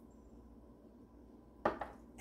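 Quiet room tone, then near the end a quick cluster of sharp knocks of glassware being handled and set down on the kitchen counter.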